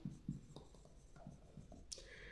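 Blue marker pen writing on a white board: faint, short scratchy strokes as a word is written, with a small click near the end.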